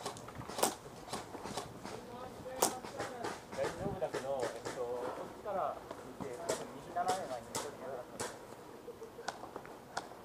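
Voices calling out at a distance, mixed with irregular sharp snaps of airsoft guns firing across the field, about one or two a second.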